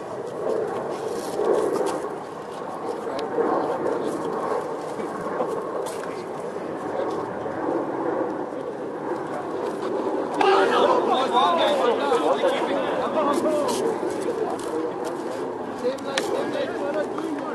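Voices of several people talking and calling out over one another, indistinct. The chatter gets louder and busier about ten seconds in.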